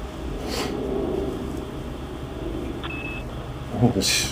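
Open telephone line left on hold, heard over a phone speaker: steady background hum and hiss, a short rustle about half a second in, and a brief high beep about three seconds in.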